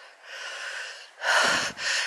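A person breathing audibly close to the microphone while walking: a softer breath, then a louder one about a second and a quarter in.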